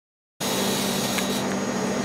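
Smoke evacuator running during a fractional CO2 laser skin treatment: a steady suction drone with a low hum, cutting in abruptly about half a second in.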